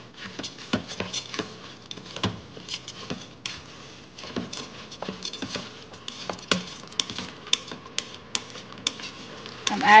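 A utensil stirring rice, peas and fenugreek leaves in the stainless steel inner pot of an electric pressure cooker, giving irregular scrapes and clicks against the metal.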